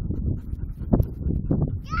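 Low, uneven rumble of wind on a phone microphone with a few soft knocks, then near the end a high-pitched call of 'yeah' that falls in pitch.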